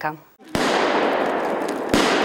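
Two sharp bangs about a second and a half apart, each followed by a long, loud noisy rush: blasts from pyrotechnic charges set off along a field training course.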